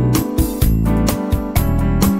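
Instrumental pop backing track with keyboard chords over a steady beat.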